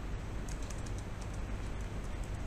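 Typing on a computer keyboard: a scattered run of soft keystrokes over a steady low hum and hiss.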